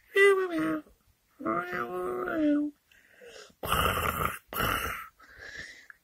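A person's voice making animal noises for a toy kitten: two drawn-out pitched calls, the second held level and then dropping, followed by two short rasping, breathy sounds.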